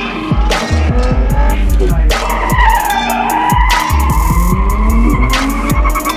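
A Nissan 350Z's tyres squealing as it slides around the cones, with its V6 engine running under load, mixed with music that has a heavy bass beat.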